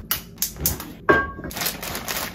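Kitchen handling sounds at a gas stove: a few sharp clicks and a metal clank with a short ring about a second in as a pan is handled on the grate. Then, from about halfway, the steady crinkling rustle of a plastic bag of broccoli being handled.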